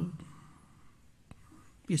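A man's voice trails off at the start, then there is a quiet pause of room tone with one faint click partway through, and his voice resumes near the end.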